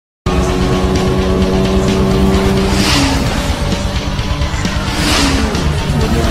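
Sports car engine sound effect laid over music: a steady engine note, then two whooshing pass-bys about three and five seconds in.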